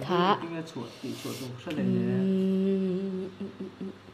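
A person's voice: a few quick spoken syllables, then one steady hummed or held note lasting about a second and a half.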